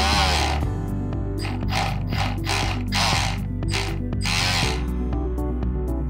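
Micro servo motor whirring in a string of short bursts as it swings the boat's rudder back and forth, the first and last bursts longer, over background electronic music.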